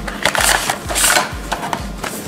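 Clear plastic blister packaging being handled and slid open by hand: crinkling, scraping and sharp plastic clicks, with two louder rustling bursts about half a second and a second in. A low pulsing hum, about four pulses a second, runs underneath.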